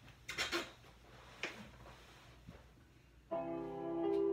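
A few faint knocks and rustles, then about three seconds in an electronic keyboard starts playing, a sustained chord ringing on.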